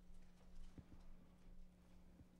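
Near silence: room tone with a steady low hum and a few faint, soft knocks.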